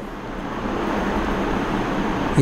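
A steady rushing background noise with no distinct events, growing slightly louder.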